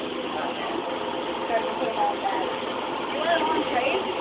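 Indistinct babble of many people talking at once in a crowded fast-food restaurant. It is a steady murmur, and a few voices briefly rise above it.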